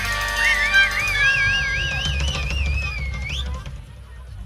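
Blues harmonica holding a high note with a strong, even vibrato that bends upward at the end, over the band's held closing chords and low drum rumble, all fading as the song ends.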